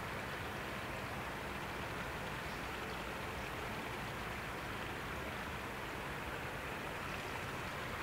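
Steady, even hiss of ambient noise at a constant level, with no bird calls.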